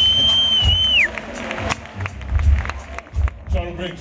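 A live band plays the last low hits of a number while the audience applauds and cheers. A long, steady, high whistle rises over the crowd and drops off about a second in. A man's voice starts speaking into a microphone near the end.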